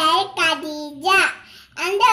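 A young girl's voice in short, drawn-out sing-song phrases, with a brief pause near the end.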